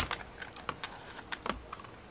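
A sharp click, then a few scattered light clicks and taps as a small hard-shell case is handled and a pocket spectrometer is taken out of it.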